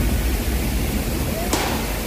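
Steady rushing noise of a waterfall heard from right at its base, water pounding onto rock.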